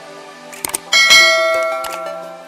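Sound effects of an animated subscribe-button end screen over background music: a couple of quick mouse clicks, then about a second in a bright bell-like ding that rings out and slowly fades.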